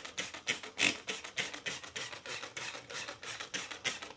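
Trigger spray bottle of Spray Nine cleaner pumped rapidly, a quick even run of short hissing squirts at about three to four a second, saturating a mini split's blower wheel.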